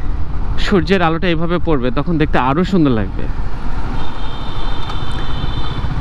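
Yamaha R15 V3 motorcycle running along at road speed, its single-cylinder engine mixed with heavy wind rumble on the rider's microphone; the rumble stands alone in the second half.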